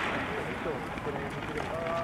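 Voices of people talking and calling out around a running track, with faint footsteps of sprinters running on the rubber track surface.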